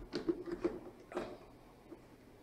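Faint plastic clicks and scraping as a plug-in power-saver unit is pushed into a wall socket, a few light knocks in the first second or so.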